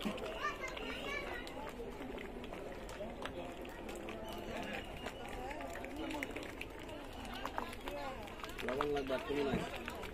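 People's voices talking outdoors over a steady background hum, with a louder voice near the end.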